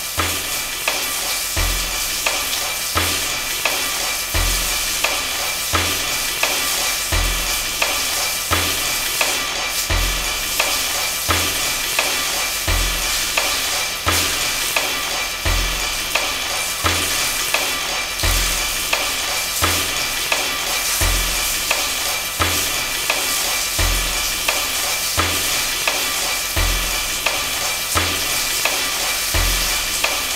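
Steady crackle and hiss, like a worn recording, with a low thump that repeats about every one and a half seconds.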